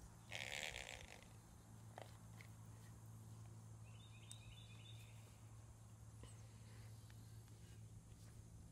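Near silence: a steady low hum underneath, a short burst of noise about half a second in, and a few faint high chirps around four to five seconds in.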